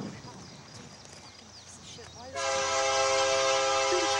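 Faint outdoor ambience, then about two-thirds of the way in, the air horn of an approaching Union Pacific SD70M locomotive starts sounding. It is a loud, steady chord of several tones held to the end.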